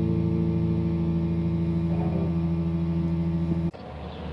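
The held final chord of a song, guitar and bass ringing out with a slight wobble, cut off suddenly near the end.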